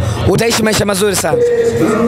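A man talking, with hip-hop music with rapping playing in the background.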